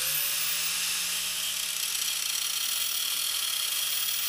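A high-speed handheld power tool cutting away part of an aluminium engine-mounting bracket. It spins up with a rising whine at the start, then runs steadily with a hissing grind.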